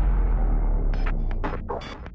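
The fading tail of a deep boom sting used as a news-bulletin transition, a low rumble dying away. Short scattered clicks and crackles come in about a second in.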